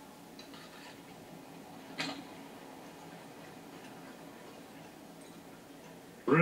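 Faint, steady background hush with a single sharp click about two seconds in.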